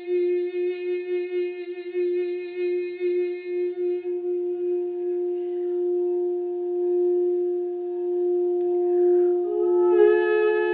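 Heart-chakra quartz crystal singing bowl rubbed around its rim with a mallet, holding one steady ringing tone, while a woman hums on the same note for about the first four seconds. After that the bowl rings on alone, and just before the end a second, higher hummed note joins it.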